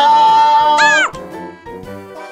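A sung outro jingle: a voice holds one long high note over a light backing track, then ends it with a quick upward-and-back swoop in pitch about a second in. After that only the quieter backing music goes on.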